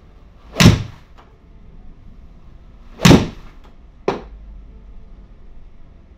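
Golf iron shots in an indoor simulator bay: a loud club-on-ball strike about half a second in and another about three seconds in, each sharp and sudden, followed a second later by a shorter, sharper knock.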